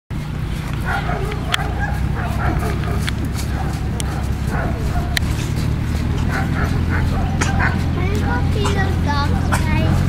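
Dogs at a nearby kennel barking and yipping in many short, scattered calls, over a steady low rumble.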